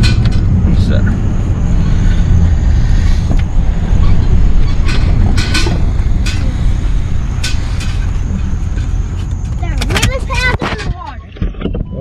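Steady low rumble of a Ford SUV driving, heard from inside the cabin, with scattered knocks and clicks. About eleven seconds in it drops off as the vehicle slows to a stop.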